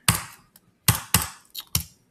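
Computer keyboard keystrokes: about five sharp key presses at uneven intervals.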